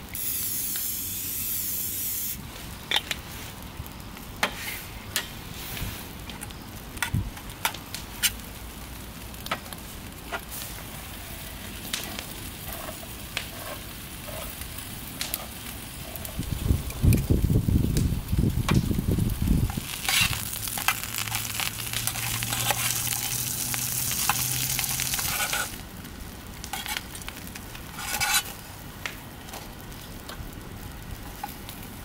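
Bread toasting in a small frying pan on a compact gas camp stove: a sizzling hiss for the first couple of seconds, then again for about five seconds in the second half, with scattered clicks and taps of cookware. About halfway through, a handheld can opener is worked around a tin in a louder, rumbling stretch of a few seconds.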